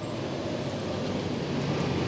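Steady street traffic noise: the continuous hum of car engines and road noise.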